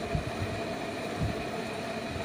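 Steady hum of room air conditioning, with a pen writing on paper and a few soft low bumps, one just after the start and one past the middle.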